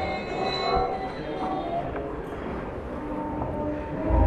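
Experimental electroacoustic laptop music made live in Max/MSP: sustained electronic tones at several pitches over a grainy rumbling noise bed, the tones thinning out after about a second.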